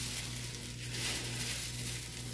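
Crisp fried potato sev (aloo bhujia) rustling and crackling as hands toss and squeeze it on a steel plate, a sign of how crunchy it is. A steady low hum runs underneath.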